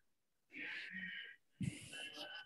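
A person's breath close to the microphone: a short, faint, wheezy breath about half a second in, then a second, sharper breath sound starting about a second and a half in.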